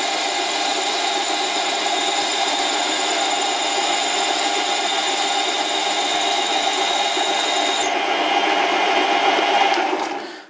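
Metal lathe running with a twist drill pressed against the end of a spinning hardened steel arbor, the bit rubbing with a steady high squeal instead of cutting: the arbor is too hard to drill. The highest part of the squeal drops out about eight seconds in, and the sound dies away at the very end as the lathe stops.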